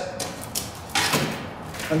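A shovel scraping and turning a seed mixture in a tub: a few short rasps, the loudest about a second in.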